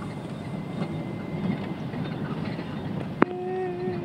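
Vehicle running along a rough dirt road, heard from inside the cab: a steady low rumble of engine and road noise. Just past three seconds in there is a sharp click, followed by a steady pitched tone that lasts under a second.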